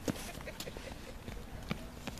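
A small child's running footsteps on brick paving: a series of light, irregular taps.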